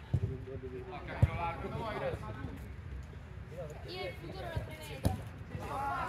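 A football being kicked on an artificial-turf pitch: four sharp thuds, the loudest about a second in, among players' distant shouts.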